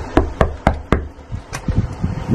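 Knuckles knocking on a glass window pane: four quick raps, then a few softer taps about a second and a half in.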